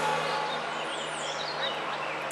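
Outdoor background: a steady low hum, with a few faint, high chirps about a second in.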